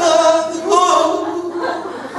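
Fado-style singing: long, wavering held notes in a comic take on a fado song, with a quieter stretch near the end.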